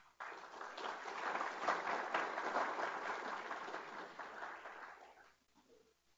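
Audience applauding, beginning just after the start and dying away about five seconds in.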